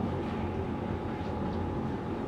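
Steady low hum of a hall's ventilation system, with a faint steady tone above it.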